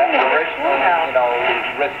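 English-language talk from a China Radio International shortwave broadcast on 11905 kHz, received on a Sony ICF-SW7600GR portable radio. The voice has the narrow, band-limited sound of AM shortwave reception.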